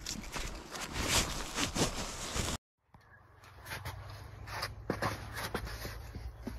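Crunching and rustling of snow and gear being handled, cut off abruptly; after a short gap, a steady low hum with scattered light clicks and taps.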